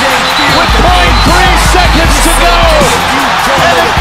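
A large arena crowd roaring, with excited television commentary, cheering a go-ahead basket in the final second of a basketball game. It is mixed with loud background music that has a pulsing bass.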